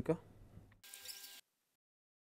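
A man's voice finishing a word, then faint room tone. Just under a second in comes a brief, faint hiss with a light hum, and after that the sound drops to dead silence.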